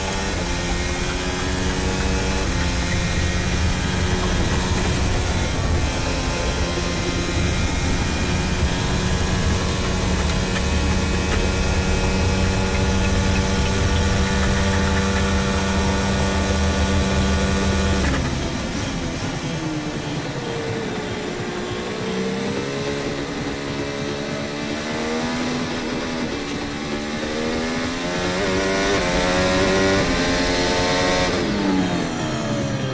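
Modern Formula 1 car's turbocharged V6 hybrid engine heard onboard, running at a steady high pitch flat out for most of the first 18 seconds. Then the note drops suddenly and swoops down and back up through the gears as the car slows for a corner and accelerates again.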